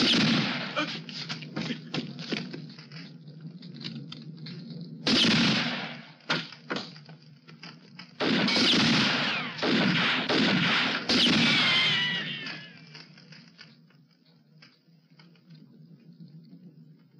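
Film sound-effect gunfire: about five loud shots a few seconds apart, each ringing on briefly, the last followed by a falling ricochet whine.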